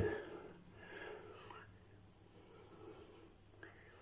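Faint, irregular rubbing of a Derby shaving stick against stubble as the wetted soap is smeared onto the face like chalk.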